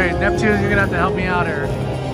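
Neptune Power Link slot machine game audio: music with several swooping, voice-like sound effects as the Neptune feature animation plays.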